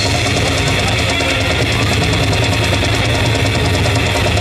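Death metal band playing loud through a live PA: a dense wall of heavily distorted, low-tuned guitar and bass with rapid drumming.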